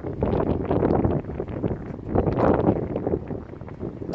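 Wind buffeting the microphone in irregular gusts, with two louder swells.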